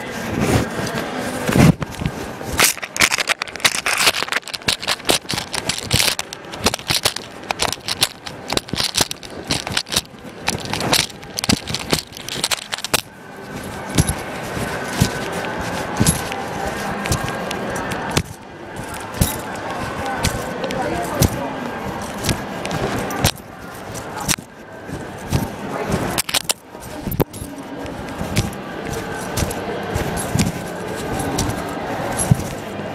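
Keys jingling and cloth rubbing right against the microphone of an iPod carried in a trouser pocket, in irregular clusters of clinks and scrapes. The rustling eases for a few seconds about midway.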